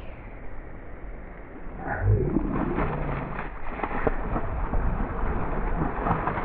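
A hooked bass thrashing and splashing at the water's surface against a bent rod, building up about two seconds in, over a low rumble; the sound is dull, with the highs cut off.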